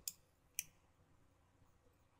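Two faint computer mouse clicks, one at the very start and one about half a second in, otherwise near silence.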